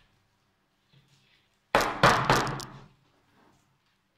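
A quick cluster of sharp knocks and rattles about two seconds in, lasting about a second: a black plastic pot filled with orchid bark knocked down on a wooden table, the bark chunks clattering.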